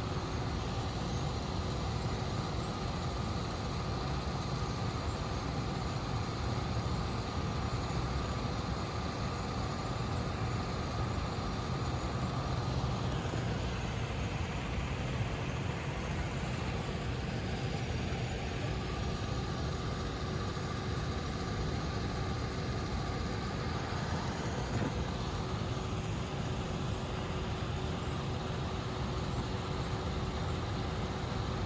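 Ford police SUV idling steadily at close range, a constant low engine hum with a faint steady whine over it.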